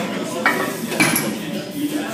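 Steel weight plates and bars clinking and clanking in a busy weight room, with two sharp clanks about half a second and a second in, over background chatter.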